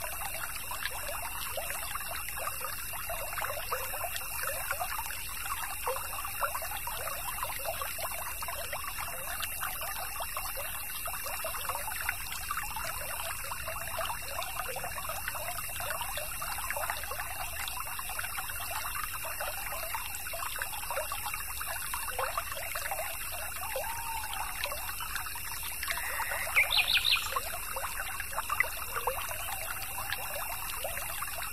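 A small stream trickling and babbling, with a steady high tone underneath. About 27 seconds in, a bird gives one short call, a quick rising run of notes and the loudest sound in the stretch.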